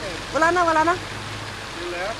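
Steady rushing of a small pond fountain's spray, with a short voiced sound from a person about half a second in.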